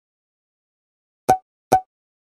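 Two short, sharp pop sound effects, about half a second apart, each with a brief tone in the middle, added in editing.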